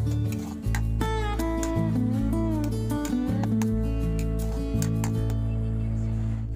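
Background music led by guitar: a melody with bending notes over steady bass notes that change about once a second.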